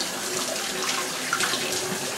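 Kitchen faucet running steadily into a sink as the basin is rinsed out.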